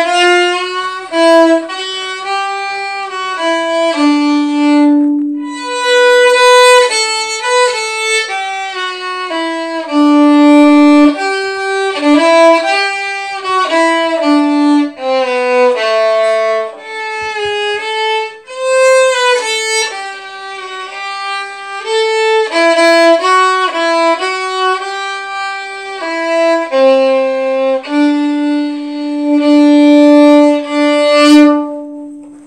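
Solo violin playing a Christmas tune, a single melody line moving note to note with brief breaks between phrases.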